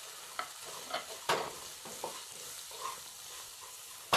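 Chopped vegetables frying in oil in a nonstick kadai, stirred with a wooden spatula: a steady sizzle with a few short scraping strokes of the spatula against the pan.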